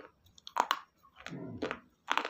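Raw green salad vegetables being chewed with the mouth closed: crisp crunches, the loudest about half a second in and another near the end, with softer wet chewing between them.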